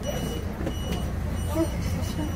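Shuttle bus engine running with a steady low rumble, heard from inside the passenger cabin, with faint passenger chatter over it.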